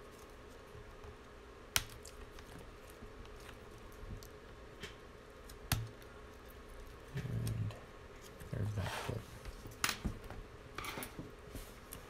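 Handling of small tools and plastic laptop parts on a workbench: three sharp little clicks a few seconds apart, with softer scattered tapping and rustling between them.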